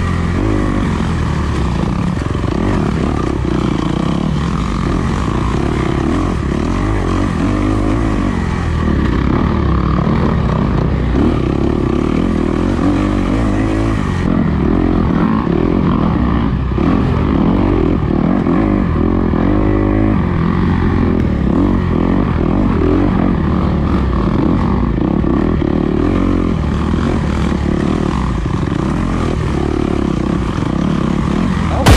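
Dirt bike engine running hard on a trail ride, its revs rising and falling continuously as the rider works the throttle.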